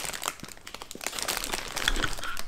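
Plastic packaging crinkling as a resuscitator mask is handled and unwrapped: a run of small, irregular crackles.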